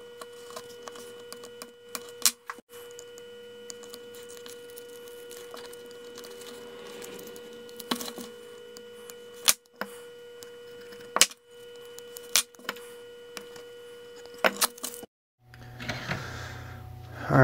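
Light clicks and scratches of a hobby knife tracing around a stick-on lure eye on a piece of tape, over a steady faint hum. The sound breaks off suddenly a few times.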